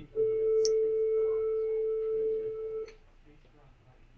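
Steady electronic buzzer tone on one pitch, held for nearly three seconds and then cutting off, from the laparoscopic simulator as the cutter touches the wood; the watcher takes it to mean the cutter has cut into the wood.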